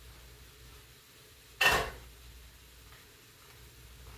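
Ground turkey and bell peppers cooking in a cast iron skillet with a faint, steady sizzle. About one and a half seconds in comes a single short, sharp, noisy burst that fades within half a second.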